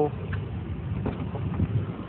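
Low, rumbling wind noise and handling on the phone's microphone, with a few faint knocks as the 2019 Ford F-250 Limited's front door is opened.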